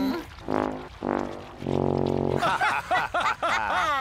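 Cartoon soundtrack: two short low notes, then a long, low buzzing note like a didgeridoo. From about halfway, several wavering, falling moans or slides follow.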